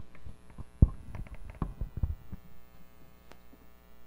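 A few dull low thumps and light knocks in the first two seconds, then a steady electrical mains hum from the sound system.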